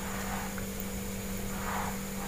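A steady low electrical hum with faint background hiss in a small room, heard in a gap between speech.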